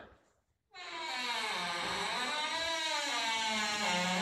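A door swinging slowly on its hinges: one long creak of about three seconds, starting just under a second in, its pitch wavering up and down. The speaker puts the door's movement down to the wind.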